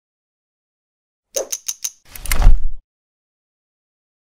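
Logo-intro sound effect: four quick clicks, then a louder swelling whoosh that ends in a deep impact and cuts off suddenly.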